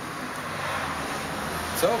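Steady rushing road noise of a passing vehicle, swelling gently, with a man's short "Co?" at the end.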